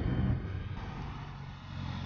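Road traffic on a city street: a steady low rumble of car engines and tyres that gradually fades.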